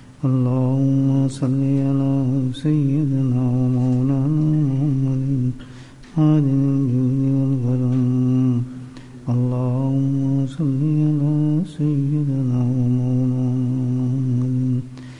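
Unaccompanied male voice chanting a slow melody in long held notes, in phrases of a few seconds with short breaks between them.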